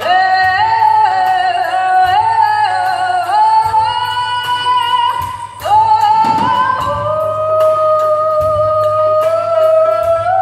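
A solo voice singing a slow, ornamented melody in traditional Japanese style, sliding up into its notes, then holding long notes through the second half. Faint regular ticks sound behind it.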